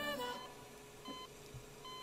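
A song's last sung note fading out, then a hospital patient monitor beeping steadily at one pitch, a short beep about every 0.8 seconds.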